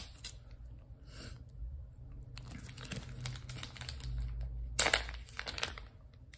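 Clear plastic zip-top bag crinkling as it is handled, with a louder crackle a little before the end as its seal is pulled open.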